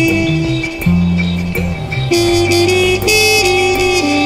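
Live minimal jazz-fusion: a trumpet plays held notes, moving between a few pitches, over an electric bass line, with steady electronic tones underneath.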